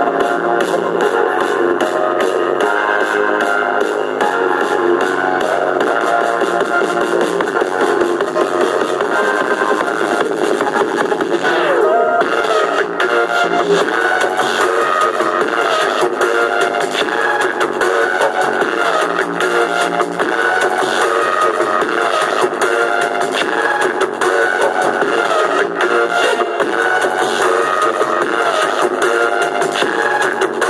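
Music with guitar and an electronic beat, without vocals, played through a homemade two-driver stereo Bluetooth mini speaker, carrying little deep bass.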